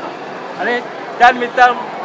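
A man speaking, with short pauses over a steady background of open-air noise.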